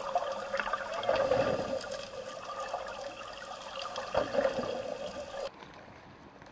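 Underwater water noise picked up by a submerged camera: gurgling and bubbling with a few short squeaky glides. About five and a half seconds in it cuts to a much quieter, thin hiss.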